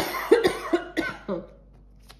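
A woman coughing: a fit of several quick coughs over about a second and a half, fading out.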